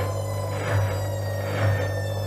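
Gorenje WA72145 front-loading washing machine's drum turning, with a steady low motor hum and a high motor whine that slowly falls in pitch. A swishing surge from the load in the drum comes about once a second, twice here.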